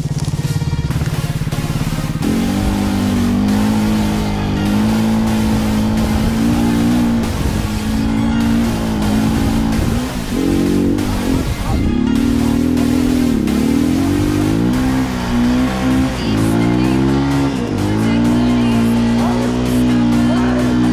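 Enduro dirt bike engine running under the rider, its pitch stepping up about two seconds in, then rising and falling again and again as the throttle is worked on a forest trail climb.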